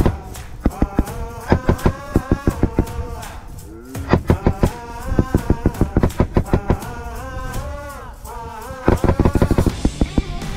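5.56 mm M249 SAW light machine gun firing several short bursts of automatic fire, separated by pauses of about a second. Background music with a singing voice plays under the shots.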